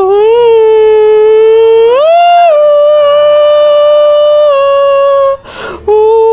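A man's high, put-on Mickey Mouse falsetto holding one long, loud "ooooh". It stays on a steady note, steps up in pitch about two seconds in and settles back a little, then breaks off just before the end and starts again.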